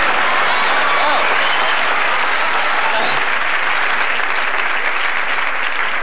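A large theatre audience applauding, a dense steady clatter of many hands that eases slightly near the end.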